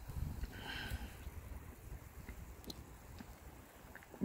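Footsteps across a grassy lawn scattered with dry leaves, with irregular low rumbling on the microphone, strongest in the first second, and a short pitched call about a second in.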